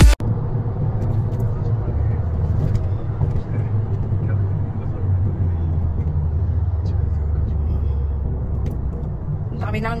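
Steady low road rumble of a car driving at traffic speed, heard from inside the cabin, with a few faint clicks. A woman's voice comes in near the end.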